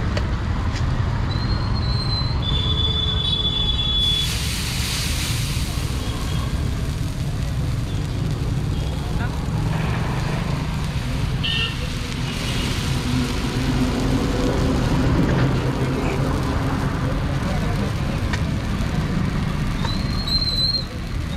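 Steady road traffic rumble with short vehicle horn toots, two near the start and one at the end. About four seconds in, a broad hiss rises over it for a few seconds.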